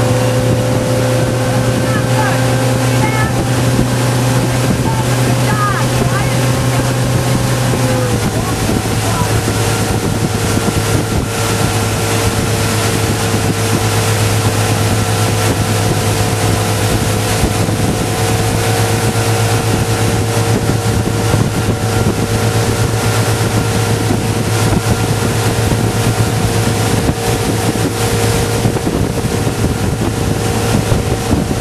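Motorboat engine running steadily at speed, its note dropping slightly after about eight seconds and then holding, with wind on the microphone.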